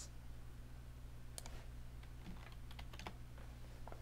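Faint computer keyboard keystrokes, a handful of scattered clicks, over a low steady electrical hum.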